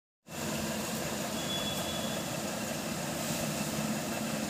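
Steady background hum and hiss, starting just after a brief silence at the start.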